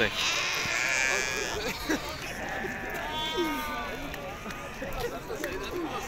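Sheep bleating, one long call near the start and another around the middle, over the chatter of a busy livestock market.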